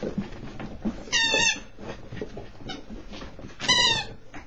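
Rubber squeaky toy tyre squeaked twice, each a high wavering squeak about half a second long, about a second in and again near the end, with scuffling of a puppy's paws on carpet between.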